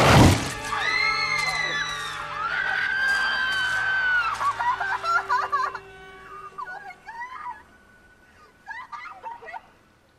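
A sudden loud crash, then shrill screaming for about four and a half seconds over film score music. In the second half the music carries on more quietly with faint scattered sounds.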